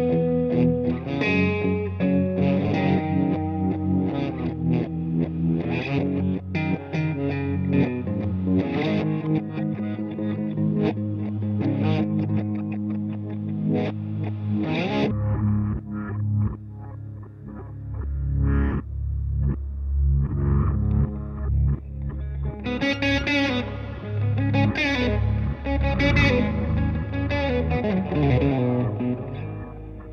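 Distorted electric guitar (left-handed Gibson SG with Burstbucker pickups, through a Headrush Pedalboard) playing slow blues over a looped backing. About halfway through, the looper switches to reverse playback at one-eighth speed, turning the loop into a deep, slowed-down backwards sound with sliding pitches. Live guitar lines come back in over it near the end.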